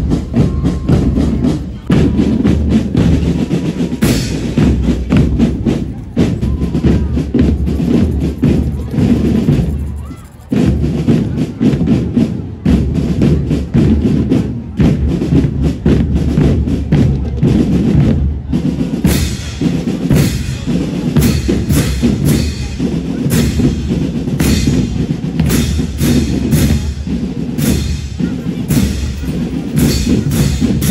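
Military cadet drum band playing: snare and bass drums beating a fast, dense rhythm. The playing drops away briefly about a third of the way in, then carries on.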